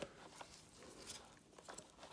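Near silence, with a few faint clicks and rustles from a vacuum cleaner's rubber hose being handled.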